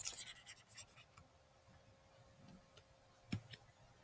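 Faint scratching of drawing on a screen in the first second, then near silence broken by a single sharp click a little over three seconds in.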